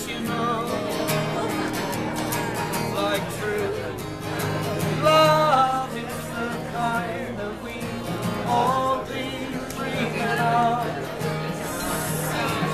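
Live acoustic folk song: strummed acoustic guitar accompanying a man singing long, wavering held notes.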